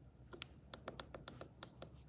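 Quick run of faint clicks from the down-arrow button of a CareSens N blood glucose meter, pressed repeatedly about five times a second to step the clock's hour setting.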